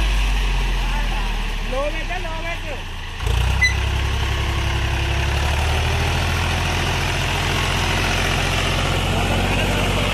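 HMT 3522 tractor's diesel engine working under load as it pulls a fully loaded trolley through soft ploughed soil. The engine sound sags a little, then jumps louder about three seconds in and runs steadily. A faint shouting voice is heard about two seconds in.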